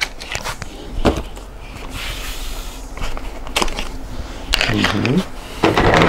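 Handling noises from stroller and car-seat parts: a few light clicks and knocks, with rustling in between. A short murmur of voice comes near the end.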